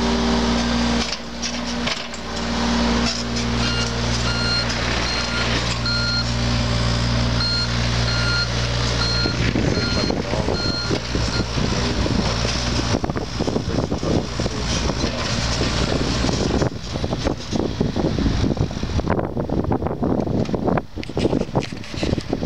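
Diesel engine of a John Deere 35G compact excavator running steadily, with its motion alarm beeping about one and a half times a second from about 4 s in until about 11 s as the machine moves. In the second half the running sound turns rougher and more uneven.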